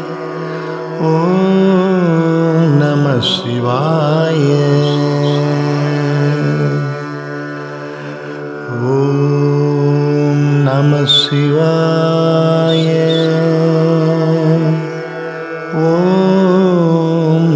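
Tamil devotional music to Shiva in Carnatic style: long held, ornamented sung phrases over a steady drone. There are brief quieter lulls between phrases, one in the middle and one near the end.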